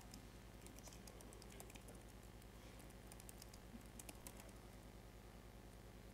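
Faint laptop keyboard typing, a scatter of key clicks over the first four seconds or so, over a steady low hum.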